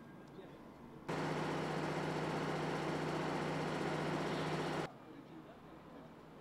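Test-site warning horn: one loud, steady, low tone that starts abruptly about a second in and cuts off abruptly nearly four seconds later.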